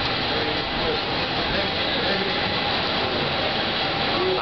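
Steady, even city street noise with indistinct chatter from a crowd of people.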